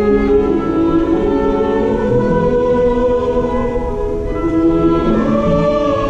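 Choir singing long held chords over an orchestra, moving to a new chord about five seconds in.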